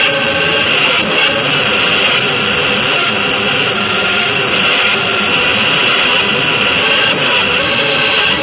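Dense, noisy avant-garde electric guitar music: a loud, continuous distorted wash with a few faint held pitches and no clear beat.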